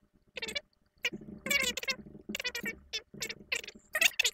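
A person's voice in short, high-pitched, unintelligible bursts, with a brief pause about a second in.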